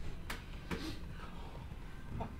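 Two short, sharp clicks about half a second apart during a chiropractic adjustment of a patient lying face down on an adjusting table.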